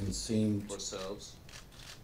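A person speaking at a press-conference microphone for about a second, then a short pause with only faint room noise.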